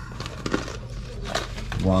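Plastic snack bag of barbecue corn nuts crinkling as it is handled, with a few sharp crackles and clicks.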